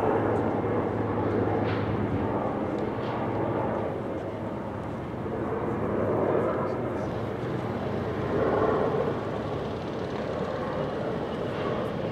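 Outdoor ambience: a steady low engine rumble with indistinct voices in the background, swelling twice in the second half, and a few faint knocks.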